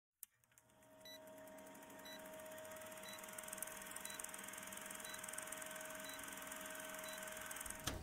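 Old-film countdown leader sound effect: a faint, steady projector-like hum that fades in about a second in, with a short high blip once a second as the count runs down.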